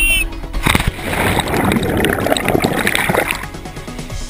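A jumper hitting a river pool with a splash about a second in, followed by about two and a half seconds of rushing, gurgling water as the camera goes under; background music plays throughout.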